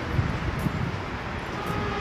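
Street noise with a vehicle running and wind buffeting the phone's microphone, a steady low rumble throughout.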